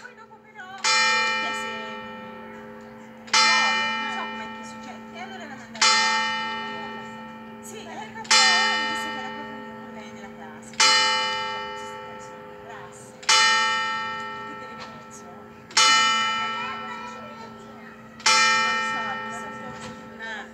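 The campanone, a church's largest tower bell, striking the hour. There are eight evenly spaced strokes of the same pitch about two and a half seconds apart, each ringing out and dying away under a lingering low hum.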